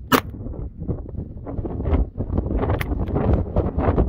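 Wind buffeting the microphone, with a sharp click just after the start and another near three seconds in. This is a Smith & Wesson 586 revolver's hammer falling without a shot: a .38 Special round misfiring.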